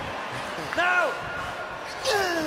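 A short shouted call, rising then falling in pitch, about a second in, over the steady murmur of an arena crowd watching a tennis rally.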